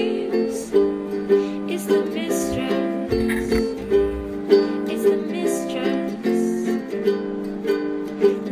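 Background music: a plucked-string tune with a steady beat.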